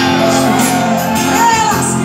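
A live band playing sertanejo: acoustic guitar, bass guitar and drums, with shouted voices over the music.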